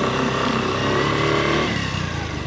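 Small motorcycle engine accelerating away, its sound fading toward the end.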